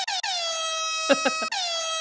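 Air horn sound effect blasting in quick repeated bursts, then held as a steady blast, re-struck about a second and a half in. A brief lower, sliding sound comes about a second in.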